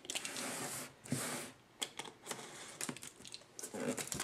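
Handling of a cardboard headphone box and a snap-off utility knife: rustling and scraping in the first second or so, then a run of small, light clicks.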